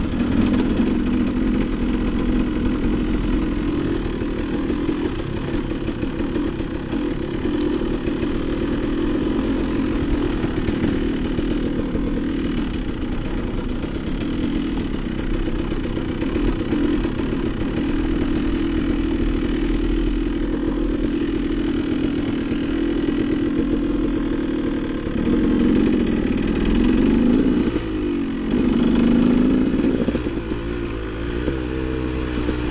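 Dirt bike engine heard from on board the bike, running steadily at trail speed with small throttle changes. In the last few seconds it gets louder, revving up and down in sweeps.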